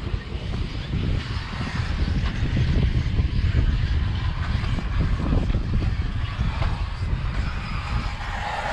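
Uneven low rumble of wind buffeting the microphone, over a faint higher whir of electric RC off-road buggies racing on a dirt track.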